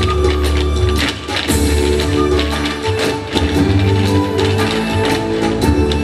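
Irish dance hard shoes, with fibreglass toe tips and hollow heels, clicking rapidly on the stage over music with a steady beat.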